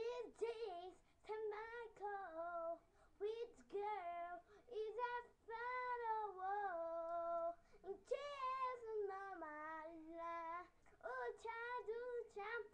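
A young child singing unaccompanied in a high voice, in short phrases with brief pauses and some notes held for a second or more.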